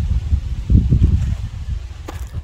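Uneven low rumble of wind buffeting the microphone, with faint rustling from handling gear.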